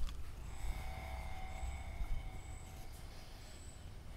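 Quiet, steady low hum of background noise with a few faint thin tones drifting in and out, and no distinct event.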